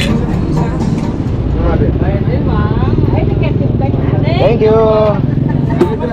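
Voices talking in the background over a steady low engine rumble of motor traffic close by.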